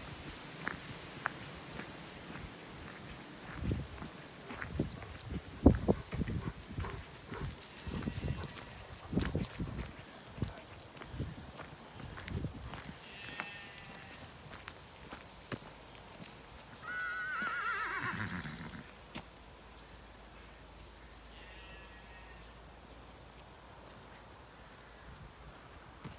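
Footsteps and scuffing knocks of someone walking along a grassy path, then a farm animal calling: one wavering cry about two-thirds of the way through, with fainter calls a few seconds before and after.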